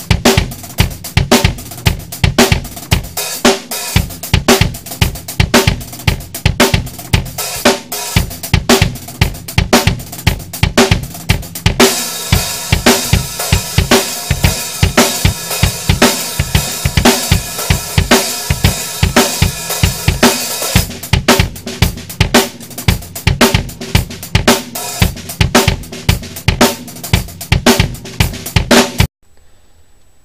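Drum kit with Soultone cymbals being played: a steady beat of kick drum, snare and hi-hat, with a stretch of continuous crash-cymbal wash in the middle. The playing stops suddenly about a second before the end.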